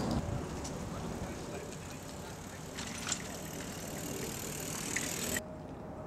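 Outdoor city ambience: a steady low rumble of distant road traffic, with a couple of faint knocks about three seconds in; the high hiss drops away suddenly near the end.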